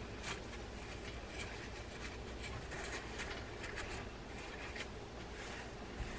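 Faint rustling and light scratching of a paper towel being rubbed over a fishing reel part to wipe out old grease and dirt, with many small ticks.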